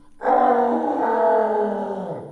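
A man's loud, drawn-out yell, held for nearly two seconds and trailing off at the end.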